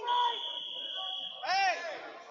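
A referee's whistle held in one steady shrill note for over a second as the wrestlers go out of bounds and the action is stopped, followed by a short, loud shout rising and falling in pitch over the chatter of the gym.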